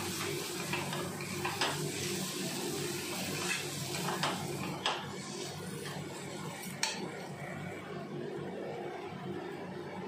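A metal spatula scraping and knocking against a metal kadhai as cubed yam and chana dal are stirred into a fried masala. Sharp knocks come now and then over a steady frying hiss.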